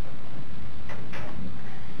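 Steady hiss and low hum of the room recording, with a couple of faint short scratches about a second in from a pen drawing on paper.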